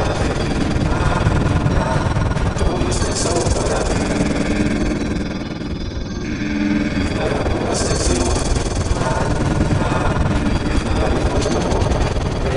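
Soundtrack of an Oreo TV commercial, music heavily altered by video-effect processing into a dense, harsh wash. It dips briefly a little past halfway, then comes back at full level.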